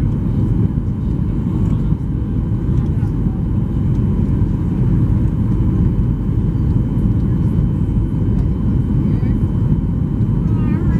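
Steady cabin roar inside a Boeing 737-800 on final approach with flaps extended: airflow and its CFM56-7B engines, heard from a window seat over the wing, deep and even throughout.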